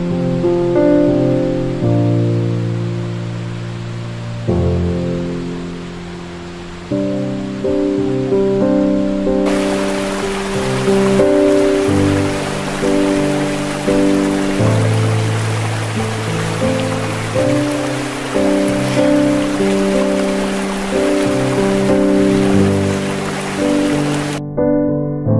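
Slow, calm keyboard music of held chords. About ten seconds in, a steady hiss of running water joins it and continues under the music.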